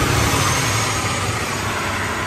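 Concrete mixer truck driving past on the street, a very loud, steady heavy-engine rumble with road noise.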